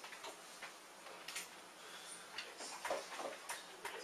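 Dry-erase marker writing on a whiteboard: irregular taps and scrapes as strokes are made, with a brief faint squeak about two seconds in.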